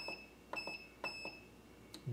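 Key-press beeper of an EPB10K electronic precision balance, three short high beeps about half a second apart as the zero key is pressed to scroll through the setup functions, each beginning with a faint click.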